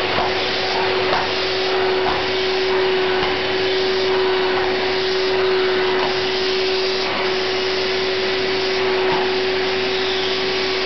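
Vacuum cleaner running steadily: a constant rushing noise with a steady pitched motor whine, swelling slightly about once a second.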